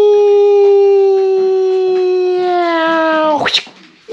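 A long, held vocal 'aaah', one steady voice-like note that dips slightly in pitch near the end and stops abruptly about three and a half seconds in.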